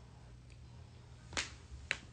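Two short, sharp clicks about half a second apart.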